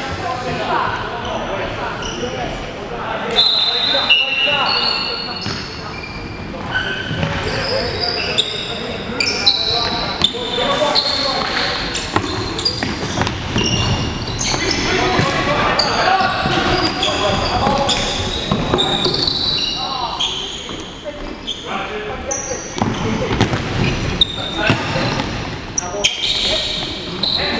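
Indoor futsal play in a reverberant sports hall: a futsal ball being kicked and bouncing on the wooden floor in sharp knocks, players' shoes squeaking in short high chirps, and players calling out to each other.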